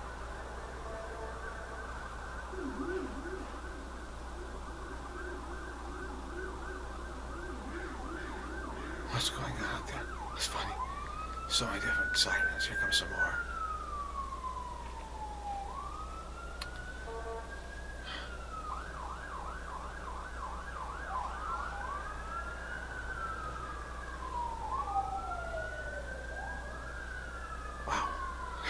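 Emergency vehicle siren, first in a fast warbling yelp, then in a slow wail that rises and falls about every four seconds. A few sharp clicks come around the middle, the loudest moments.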